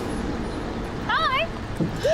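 City street traffic: a steady low rumble of passing vehicles. A brief high wavering tone sounds about a second in.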